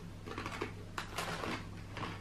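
Chewing crunchy Fritos barbecue-flavour corn chips: a few irregular crunches, roughly half a second apart, over a steady low hum.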